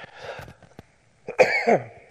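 A man coughing once, a short burst about halfway through that ends in a falling voiced sound, after a softer breathy sound just before.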